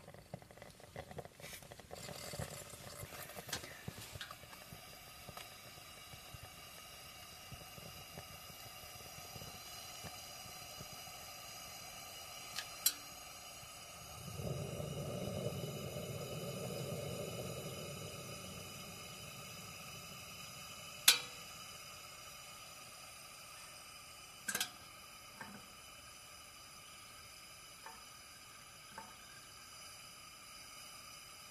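Camping lantern burning with a faint, steady hiss, broken by a few sharp clicks or pops, the loudest about two-thirds of the way through. A swell of lower rushing sound rises and fades for a few seconds around the middle.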